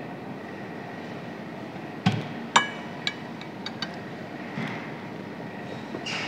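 A metal fork clinking against a plate, a handful of sharp clinks, the two loudest about two seconds in and ringing briefly, then a few lighter taps, over steady room noise.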